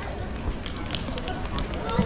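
Outdoor crowd of tourists talking, with sharp clicks of footsteps on stone paving over a steady low rumble. A louder knock comes right at the end.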